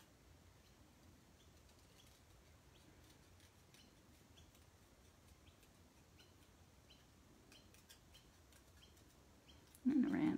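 Faint snips of small scissors cutting cardstock around the letters of a sentiment: soft short clicks about once or twice a second, coming closer together in the last few seconds. A short louder sound comes right at the very end.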